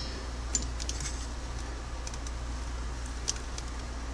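A few faint metallic clicks from vise-grip locking pliers clamped on a broken-off screw as they are worked to turn it, over a steady low hum.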